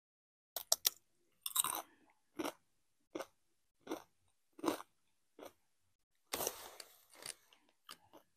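Close-miked crunching of a Doritos tortilla chip: three quick sharp bites, then steady chewing about once every three-quarters of a second. Near the end, a longer crinkling rustle from the chip bag.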